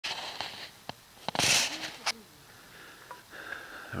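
A short, loud breath from the person filming, among a few small clicks of handheld camera noise.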